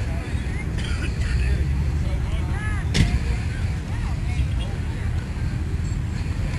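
Low, uneven rumbling outdoor noise on a phone microphone, with faint distant voices and a single sharp click about three seconds in.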